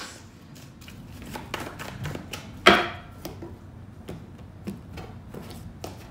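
A deck of tarot cards being shuffled by hand: a run of soft card clicks and taps, with one much louder snap about two and a half seconds in.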